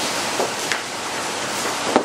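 Steady background hiss with a few light clinks from a jigger and shaker as gin is poured, and a knock near the end as the glass gin bottle is set down on the bar.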